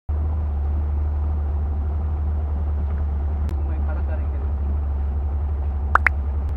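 Outboard motor of a small boat running at steady cruising speed, a low steady drone. A short rising chirp sounds just before the end.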